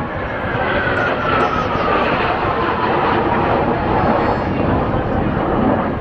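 A formation of Blue Impulse Kawasaki T-4 jet trainers flying over. A broad jet rumble swells through the passage, and a whine falls in pitch over the first few seconds as the jets go by.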